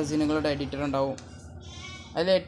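Speech: a voice saying words aloud, trailing off about a second in into a faint hiss.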